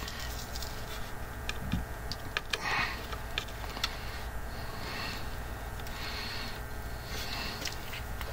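Quiet soldering work on a circuit board: small scattered clicks and taps of the soldering iron and solder wire against the board, with a few short soft hisses, over a steady low hum.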